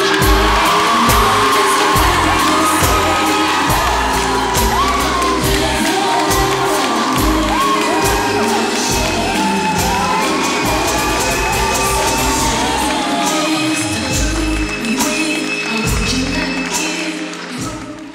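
R&B pop music with singing plays under a group of people cheering and whooping; it all fades out near the end.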